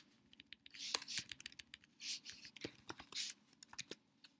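Computer keyboard being typed on: irregular keystrokes, some in quick runs, with short gaps between.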